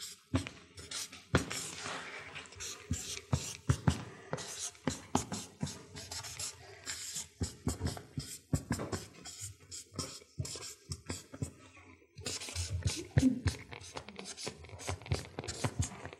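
Marker pen drawn across flip-chart paper in quick, irregular strokes as letters are written, with a lull about ten seconds in before the strokes start again.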